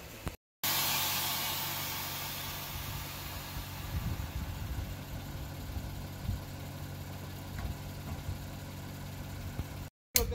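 A car engine idling steadily after a brief drop-out, with a hiss that fades over the first couple of seconds.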